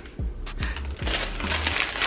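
Foil snack chip bag crinkling and crackling as it is handled and pulled open, with a few sharp crackles, over background music with a low bass line.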